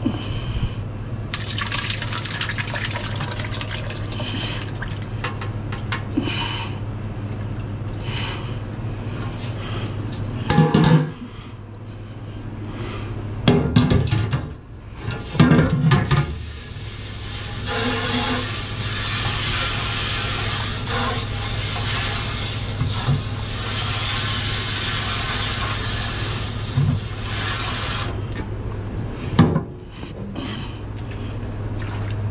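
Liquid broth pouring from a stockpot through a mesh strainer into another pot, then a few loud knocks of metal pots being handled. From about halfway, a pre-rinse spray faucet hisses water into the emptied steel stockpot at a steel sink for about ten seconds, then stops. A steady low hum runs underneath throughout.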